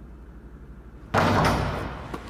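A sudden loud bang, like a slam, about a second in, with a reverberating tail that dies away over most of a second. It sits over a low steady hum.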